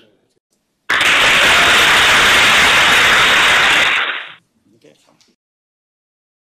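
A loud, steady burst of static-like hiss that starts abruptly about a second in, holds an even level for about three and a half seconds, then cuts off.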